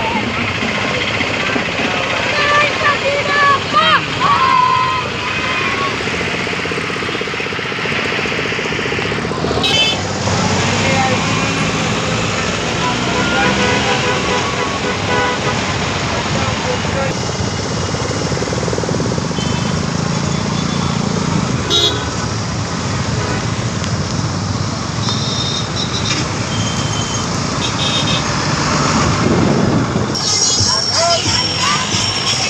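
Busy road traffic heard from a moving vehicle: a steady run of engine and road noise, with vehicle horns tooting several times, mostly in the second half, and people's voices in the mix.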